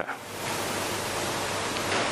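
A steady, even hiss that fills the pause between words, holding level throughout.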